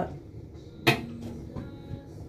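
A single sharp knock or click about a second in, as something is handled off to the side; otherwise quiet room sound with a faint low tone after the knock.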